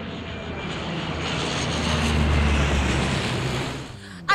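Jet airliner fly-by sound effect: a rushing engine noise with a low rumble that swells to its loudest in the middle and fades away near the end.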